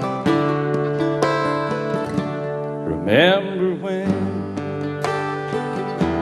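Country band playing a song's instrumental intro: strummed acoustic guitars over held bass notes. About halfway through, a sliding, wavering lead line comes in.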